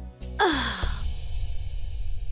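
Dramatic background score of a TV serial: a rapid low drumbeat pulsing about five times a second stops just under a second in, following a sound that sweeps down in pitch, and gives way to a low rumbling drone.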